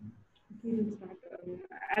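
A woman's voice talking over a video call, starting about half a second in after a brief low thump, with words too unclear for the recogniser.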